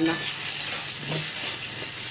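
Potato pieces frying in hot oil in a steel wok on a gas stove, with a steady sizzle, while a spatula turns them.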